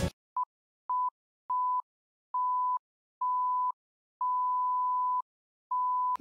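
Electronic beep sound effect for a film-countdown leader: seven beeps at one steady, mid-high pitch, growing longer one after another, from a short blip to the last beeps of about a second.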